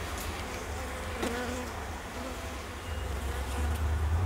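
Honey bees buzzing over an open hive, with one bee's buzz passing close about a second in. A low rumble underneath grows louder near the end.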